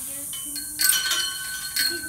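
Metal horse tack and cross-tie hardware clinking: two sharp clinks about a second apart, each ringing on briefly.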